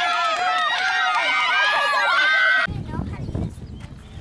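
A group of young girls on a softball team bench cheering together, many high-pitched voices at once. It cuts off abruptly about two and a half seconds in, leaving a low rumbling noise with faint voices.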